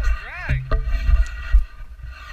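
Untranscribed people's voices over a heavy, uneven low rumble, with one short call that rises and falls in pitch about half a second in.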